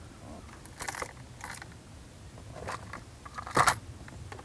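Hard plastic lures and a plastic tackle box clicking and rattling as a hand sorts through them: a few separate clicks, with the sharpest one near the end.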